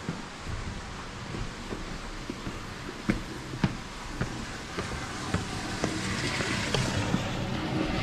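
Footsteps on concrete steps and pavement, a sharp step about every half second, over a steady rushing background noise that grows louder near the end.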